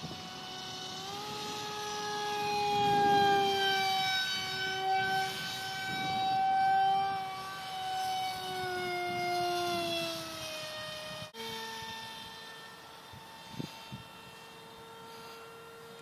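Electric motor and 6x4 prop of an RC Powers Eurofighter foam jet whining as the plane flies, on a Grayson Super Megajet v2 motor and a 4S battery. It is one pitched whine that rises about a second in, swells twice as the plane passes, and sinks in pitch near the ten-second mark. After a short break it goes on as a quieter, steady, lower whine.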